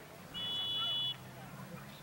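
Referee's whistle: one blast of just under a second, a steady shrill two-tone note, blown to stop play for a foul after a player is tripped.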